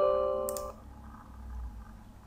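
Windows 10 User Account Control chime: a short chime of a few notes stepping up in pitch, ringing until about three-quarters of a second in. A brief click comes about half a second in.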